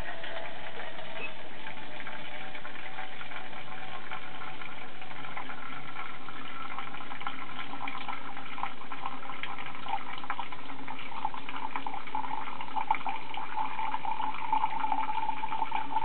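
Water running steadily out of a hose into a cup, filling it, driven by air expanding in an aluminum can heated over a flame. A clearer ringing note in the second half.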